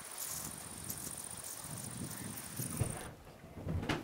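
Outdoor ambience with wind rumbling on the microphone and a faint steady high whine. It cuts off abruptly about three seconds in, giving way to a quieter indoor sound with a few soft knocks.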